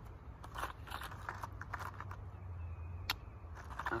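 Paper and a plastic bait bag being handled, with short rustles and crinkles and one sharp click about three seconds in, over a low rumble of wind on the microphone.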